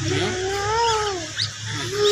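A drawn-out, whiny voice sound whose pitch rises and then falls over about a second, over a steady low hum that stops near the end.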